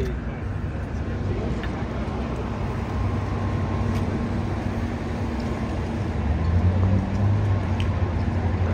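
Steady low rumble of idling engines, with a low hum that strengthens about three seconds in and again about six seconds in.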